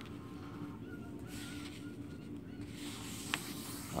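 Soft rustle of a sheet of paper being folded and pressed flat by hand, with a single light tick a little past three seconds in, over a steady low hum.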